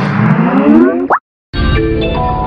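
Skype logo jingle warped by a video-editor audio effect: several tones glide upward in pitch together and end in a quick upward sweep about a second in. After a brief silence, another distorted logo jingle starts about a second and a half in, with steady tones over a low bass.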